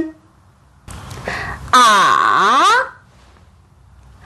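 A woman's voice holding a long 'ǎ' for about a second, its pitch falling low and then rising again: the Mandarin third tone (214) demonstrated on the vowel 'a'. A breathy sound comes just before it.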